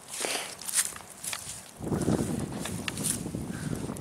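Footsteps on dry grass and dead leaves: a few light crunches at first, then a denser, continuous rustling from about halfway.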